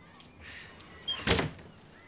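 A wooden cupboard door being shut: a brief high squeak, then a single thump as it closes, about a second and a quarter in.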